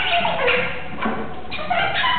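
Free-improvised music: reed instruments, a saxophone among them, playing squealing, voice-like tones that bend and slide, with one tone falling in pitch early on and new pitched notes entering about a second and a half in.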